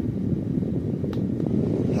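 Small USB-powered GAIATOP handheld fan running on its medium setting, its airflow hitting the microphone as a steady low rushing noise.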